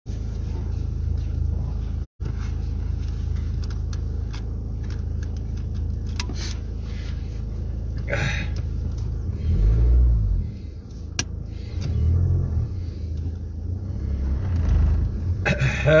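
Steady low rumble inside a car's cabin with the engine running, with rustling and a few sharp clicks as the seatbelt is pulled across and fastened.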